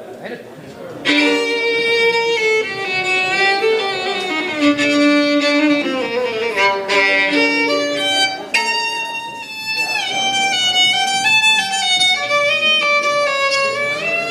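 Solo violin played live with the bow, starting about a second in with sustained notes, at times two strings sounding together, moving into a flowing melody.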